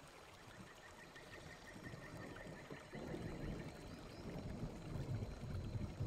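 Faint ambient noise: a low, even rush that gets louder about halfway through, with a faint run of small high chirps in the first couple of seconds.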